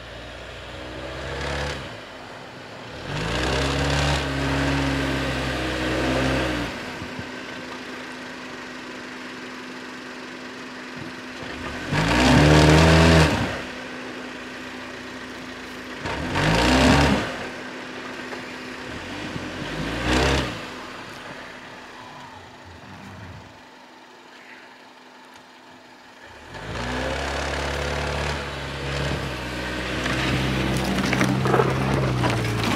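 2017 Jeep Renegade Trailhawk's four-cylinder engine revving up and down in about five bursts as it pushes through deep snow, with a steady lower drone between the bursts.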